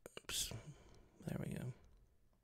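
A man muttering softly under his breath, a short hiss and then a few low mumbled syllables, with a few faint keyboard clicks at the start.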